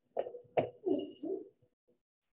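A man's voice making a few short, low murmured sounds, not clear words, in the first half, then silence for the second half.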